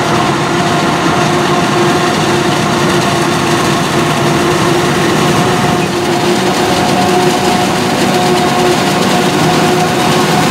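Claas Jaguar 990 forage harvester, with its MAN V12 diesel, chopping standing corn and blowing silage into a trailer, mixed with the diesel engine of the Case IH tractor pulling the trailer alongside. The machinery runs at a loud, steady level with a held, even whine over the engine noise.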